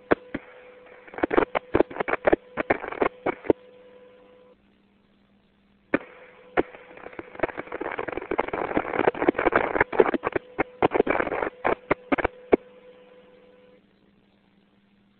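Radio static crackling and popping in irregular clusters over a steady hum on the mission control voice loop, the sound of the lost communication link with Columbia. It cuts out to near silence about four and a half seconds in, returns thicker a second and a half later, and fades out near the end.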